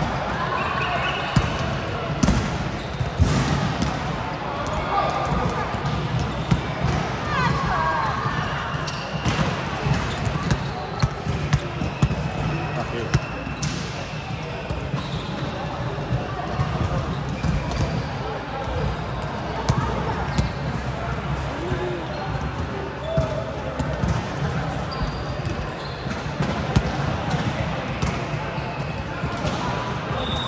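Volleyballs being struck and bouncing on a sports-hall court, giving irregular sharp thuds, over the chatter of players in a large hall.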